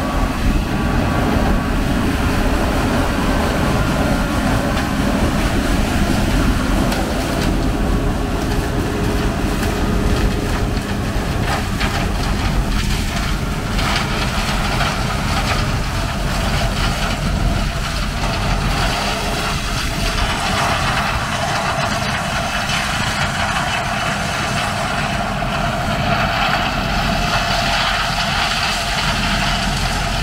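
John Deere 9400 combine running under load while harvesting corn: a steady drone of the diesel engine and threshing machinery. The sound thins a little in the second half as the machine moves away.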